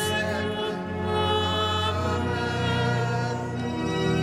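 Solo female cantor singing a liturgical chant in a reverberant cathedral, her voice held with light vibrato over sustained low accompanying notes.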